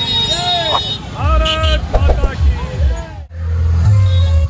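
Voices calling out over motorcycle engines running in a slow-moving procession. The sound breaks off abruptly a little after three seconds in, followed by a steady low hum.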